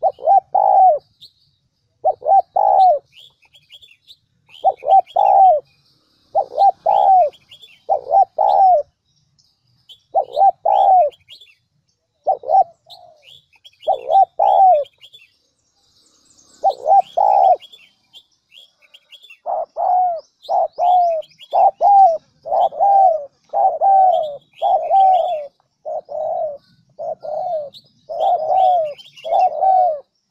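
Spotted dove cooing in short phrases of two or three coos. The phrases are spaced apart at first and come almost without a break in the second half. Thin high chirps of small birds sound faintly above them.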